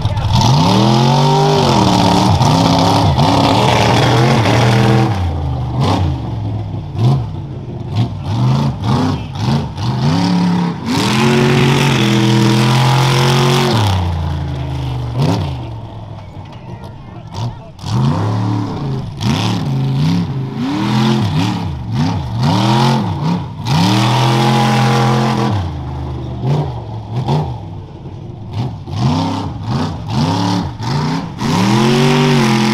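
Modified rough truck's engine at full throttle off the start line, then revving up and down again and again as it runs the dirt course, its pitch rising and falling roughly once a second.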